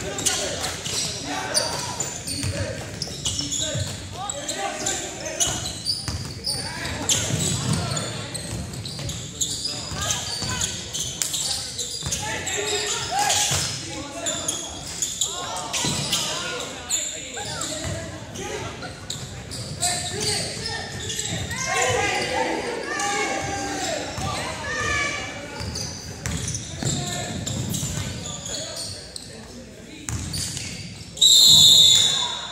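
Basketball game in a gymnasium: a ball bouncing on the hardwood floor and indistinct shouts of players and spectators, echoing in the large hall.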